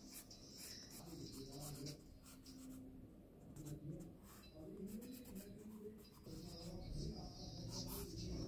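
Wooden graphite pencil scratching on sketchbook paper in short, repeated drawing strokes, with a brief pause about three seconds in.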